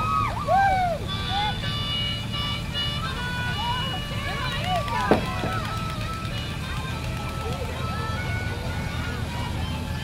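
Parade street sound: a towing vehicle's engine running low and steady under children's voices and calls, with snatches of held melodic tones in the first half.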